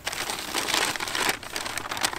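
Brown paper bag crinkling and rustling as it is opened and a plastic bottle is pulled out of it. The crinkling is dense for the first second or so, then thins to scattered crackles.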